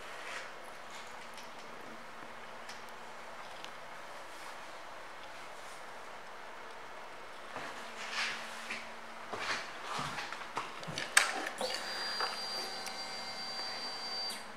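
Quiet room tone with a faint steady hum. After about seven seconds come scattered clicks and knocks of handling, and a steady high thin tone sets in near the end.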